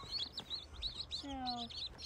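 A tub crowded with Bresse chicks peeping, many short high peeps overlapping without a break.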